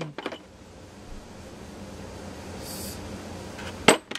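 Faint steady shop background noise, with a few light clicks and one sharp click near the end as metal valve seat cutters are handled in their plastic case.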